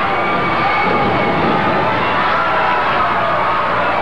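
Arena crowd cheering and shouting during a wrestling match, a steady roar with a few voices holding long yells above it.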